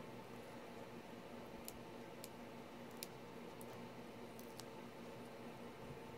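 Faint handling of a cardstock star with foam adhesive dots: about five soft, scattered clicks and ticks of paper over a low steady room hum.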